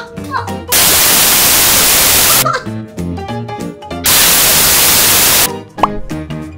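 Two bursts of loud, even static-like hiss, one starting about a second in and one about four seconds in, each under two seconds long, with upbeat background music between them.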